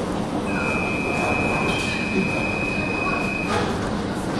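CAF Boa metro train braking to a stop at a platform, its running noise joined by one steady high-pitched squeal about three seconds long that ends as the train halts.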